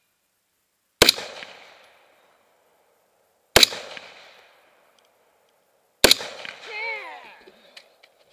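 Three shots from a scoped AR-style semi-automatic rifle, fired slowly about two and a half seconds apart. Each shot is followed by an echo that fades over about a second.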